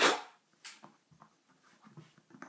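A short breathy exhale right at the start, then a brief hiss and scattered faint light clicks and taps of small alcohol-stove parts being handled.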